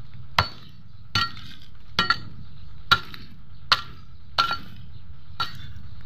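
A steel hoe chopping into stony ground, seven strikes a little under a second apart, each with a short metallic clink as the blade hits stones in the soil.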